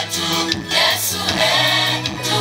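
A gospel choir singing over amplified backing music with a steady bass line and beat.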